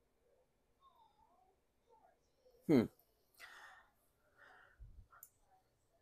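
Near silence for the first few seconds, then a man's short, falling 'hmm' and a soft breath out, followed by a few faint low bumps.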